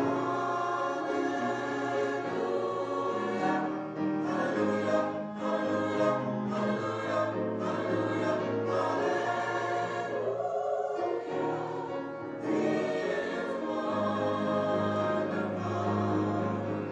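A small choir singing in harmony, with sustained chords and a brief break between phrases about ten seconds in.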